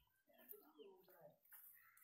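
Near silence, with a few faint short chirps and a faint distant voice.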